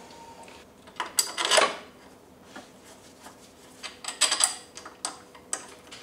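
Bolts being tightened with a hand tool on a power wheelchair's metal seat frame: scattered metallic clicks and short scraping clatters, with the busiest bursts about a second in and around four seconds in.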